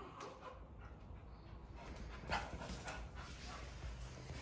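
A dog whimpering faintly, a few short high whines about halfway through.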